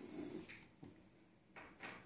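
Faint handling noises at a lab bench: a soft rub and knock near the start, then two short rustles near the end, as a hand shifts its position on the bench top.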